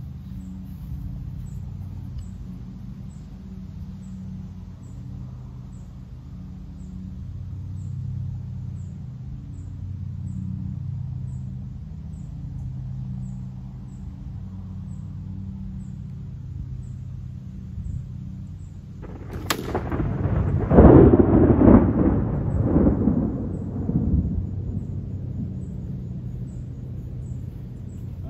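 Steady low rumble, then about two-thirds of the way in a single sharp smack as a broadhead-tipped arrow of about 469 grains, shot from a 43-lb recurve, strikes a wooden board target. Several seconds of louder rumbling noise follow.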